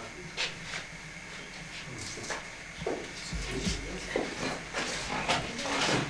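Scattered knocks and shuffling from people moving about in a cramped space, over a steady hiss, with faint murmured voices. A low bump comes about three and a half seconds in.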